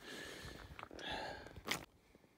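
A person's breathing: a soft exhale swelling about a second in, and one sharp click near the end, after which the sound cuts off.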